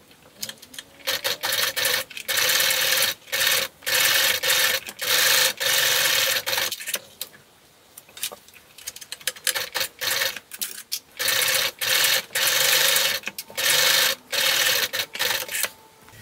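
Electric sewing machine stitching through a folded edge of thin leather, running in short runs of a second or two with brief stops, as it backstitches at the start and end of each seam. A longer pause about seven seconds in separates two pieces.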